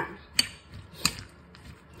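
Metal spoon stirring chopped tomato, cucumber and onion in a ceramic bowl, clinking sharply against the bowl twice.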